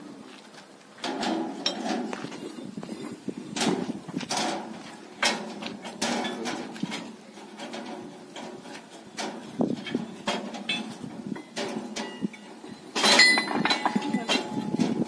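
Rusty steel weeder blades clinking and knocking against each other as they are handled and stacked, in irregular metallic knocks with a louder clatter near the end.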